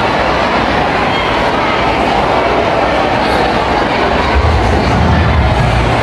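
Loud, echoing din of a large arena: crowd noise mixed with music from the PA speakers, with heavy bass coming in about four seconds in.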